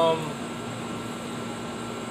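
A steady background hum with a faint constant tone, like a machine running nearby, after a brief spoken "um" at the start.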